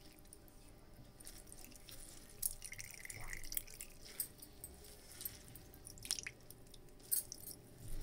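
Faint trickling and dripping of whey squeezed from yogurt in a cloth, falling through a stainless steel mesh strainer into a bowl, with a few soft handling taps.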